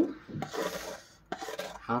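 A steel spoon scraping across a plastic plate, scooping up salt: one longer rasping scrape about half a second in, then a few shorter scrapes and taps.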